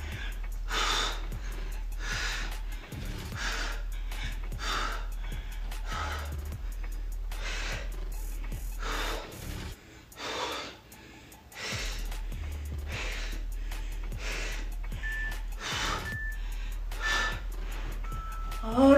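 A woman breathing hard while exercising: short, noisy exhalations repeated every second or so, over faint background music. Three short high beeps sound near the end.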